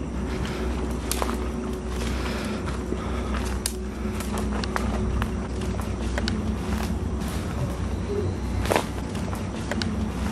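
Footsteps through weeds and dry leaf litter, with scattered sharp snaps and rustles over a steady low background rumble.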